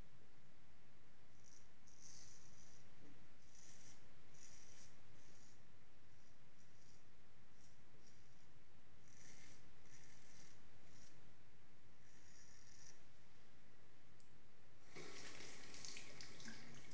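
Freshly honed 8/8 Wade & Butcher straight razor shaving stubble through lather: a series of short, crisp scraping strokes, each lasting about half a second to a second. Its heavy hollow-ground blade is not silent on the face. Near the end a sink tap starts running.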